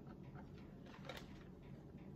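Near silence: room tone with a few faint clicks from a plastic RC radio transmitter being handled.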